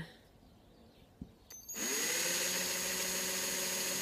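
Bosch cordless drill with a half-millimetre bit starting up about two seconds in, spinning up and then running steadily as it drills a fine hole into rimu wood.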